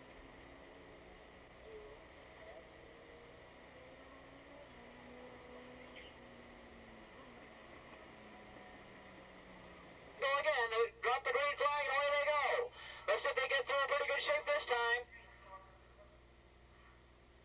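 A loud voice that the transcript does not catch comes in about ten seconds in and lasts some five seconds, with a short break in the middle. Before it there is only faint background, with a low drone that slowly falls in pitch.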